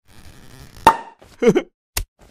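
A champagne cork pops out of the bottle with a sharp, loud pop after a short building hiss, as a cartoon sound effect. A short cry falling in pitch follows, and a brief sharp click comes near the end.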